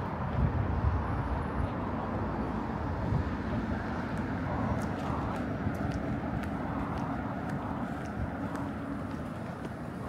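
Outdoor city ambience: a steady low rumble of traffic, with wind buffeting the microphone in the first second or so.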